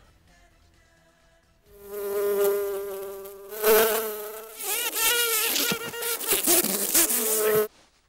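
Housefly buzzing close by. The buzz is faint at first and turns loud about one and a half seconds in. Its pitch wavers up and down as the fly circles near the ear, and it cuts off suddenly near the end.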